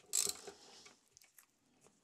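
Ratchet wrench clicking as a small bolt is backed out: one short burst of clicks just after the start, a fainter one soon after, then only a few faint ticks. The bolt is working loose.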